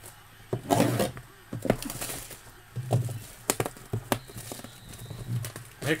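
Trading cards and cardboard packaging being handled on a desk: scattered sharp clicks and taps with brief rustles, over a low background hum.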